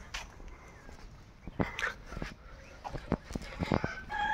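Footsteps and small clicks on a dirt lane, with a short animal call, most like a dog's, about one and a half seconds in. Another drawn-out animal call starts just before the end.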